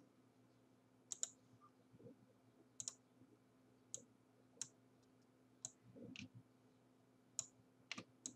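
Computer mouse clicking: about nine single, sharp clicks, spaced irregularly a half-second to a second or more apart, over a faint steady low hum.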